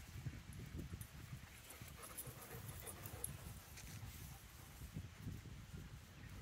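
Faint sounds of several dogs moving about on grass over a low, irregular rumble, with scattered light ticks and no clear barks.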